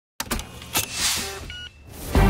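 Synthetic title-sequence sound effects: a sharp hit just after the start, a second hit before the middle, a rising and fading whoosh, and a short electronic beep near the end.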